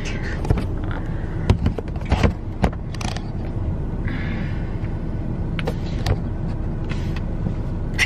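Clicks and knocks of a camera being handled and repositioned on a car dashboard, over the steady low rumble of the car.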